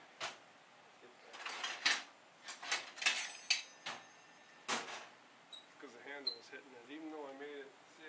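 A string of short scraping and knocking handling noises, as tools and things on the work table are picked up and moved, in the first five seconds. Faint talk follows.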